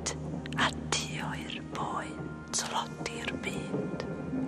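A man's whispered voice speaking lines of verse, over soft sustained background music.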